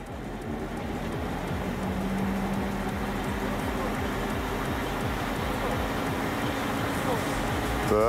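A Lada's rear wheel spinning up on jack stands, driven by the engine in fourth gear: a steady rush of tyre, wind and driveline noise that slowly grows louder as the wheel speeds up.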